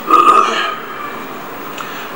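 A man's brief throaty vocal sound, a short non-word utterance, in the first half-second or so, then steady background noise of the recording.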